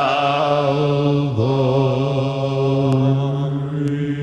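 Male vocal ensemble singing into microphones, holding long sustained chords; the chord changes about a second and a half in.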